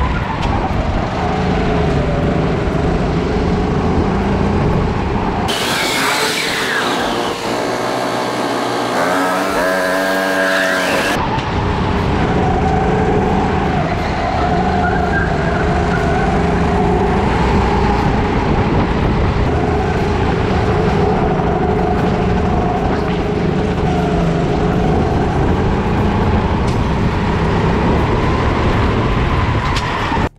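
Onboard sound of a rental kart's small engine running hard, its pitch rising and falling with the throttle through the corners. About six to eleven seconds in, the sound turns harsher and higher-pitched, with pitched lines climbing, before the steady engine note returns.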